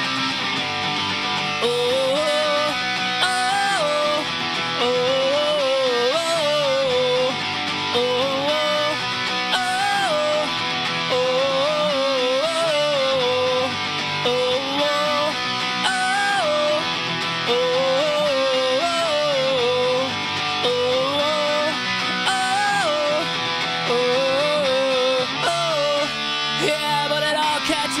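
Music: an instrumental break of a ska-punk song, electric guitar strumming under a repeating melody line with sliding notes, in phrases about every two seconds.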